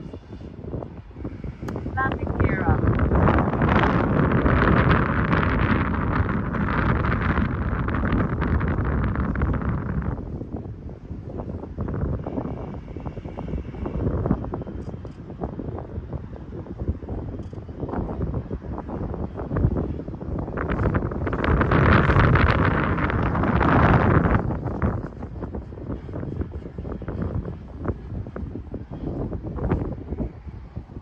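Heavy wind buffeting the microphone, with the electric motors and propellers of a radio-controlled model plane buzzing overhead. The plane gets louder twice as it passes, first from about 3 to 10 seconds in and again from about 21 to 25 seconds.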